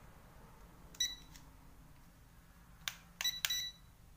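Toy drone remote control beeping: a click and a short high beep about a second in, then another click and two short beeps near the end, as its buttons and sticks are worked.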